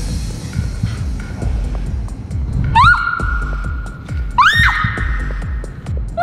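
Background music with a steady beat. Twice, about three and about four and a half seconds in, a high tone swoops up and holds.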